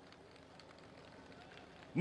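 A pause between phrases of a man's speech, with only faint background noise.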